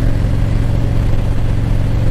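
Harley-Davidson Ultra Classic's Milwaukee-Eight 107 V-twin cruising at a steady speed, a constant low engine drone under steady wind and road rush.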